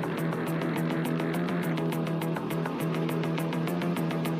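Music with a steady beat of high ticks, about four a second, over a held low note.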